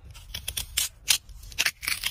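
Knife blade slicing down through a raw purple radish: about half a dozen short cutting strokes in quick, irregular succession.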